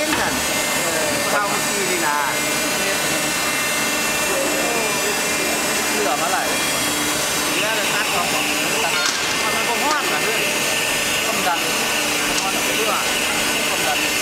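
Steady, loud factory machinery noise: a continuous rush with a low hum from the moulding press area, and workers' voices chattering over it. A higher steady whine joins about halfway through.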